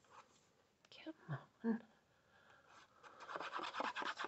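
Tip of a squeeze bottle of liquid craft glue (Nuvo Deluxe Adhesive) drawn across card stock, turning into a rapid scratchy crackle from about three seconds in. The bottle is nearly empty.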